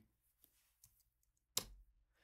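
Near silence with a couple of very faint ticks, then one sharper click about one and a half seconds in: computer mouse clicks while a track is muted in a drum sequencer.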